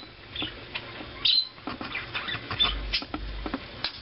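Light scratching and rustling of fabric and glued lace trim being folded over by hand, with two short high chirps early on.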